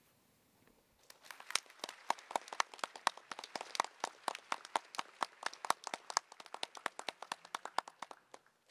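Audience clapping in a hall, starting about a second in and dying away near the end, with separate claps heard rather than a continuous roar.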